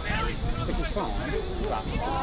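Several voices calling out and talking over one another, with no clear words: players and sideline spectators at a rugby league match, over a steady low rumble.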